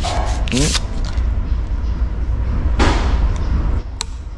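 Disposable wooden chopsticks being split apart with the teeth, ending in one short crack about three seconds in, over a steady low rumble of room and handling noise.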